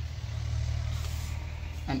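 A steady low droning hum, like a motor vehicle engine running nearby.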